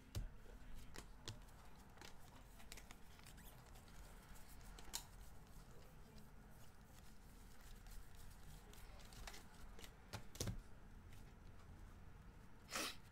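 Faint clicks and taps of 2019 Bowman baseball cards being flipped through by hand and set down on a stack, with a louder double tap near the end.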